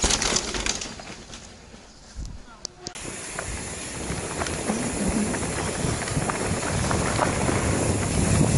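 A mountain bike rides past on a dirt trail with a brief burst of tyre noise. About three seconds in, the sound switches to the rider-mounted camera: steady wind and tyre noise on the microphone, with small rattles and knocks, growing louder as the bike gathers speed downhill.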